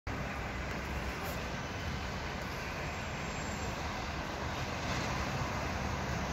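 Steady urban ambience: a continuous low rumble and hiss of distant street traffic, with no distinct calls standing out.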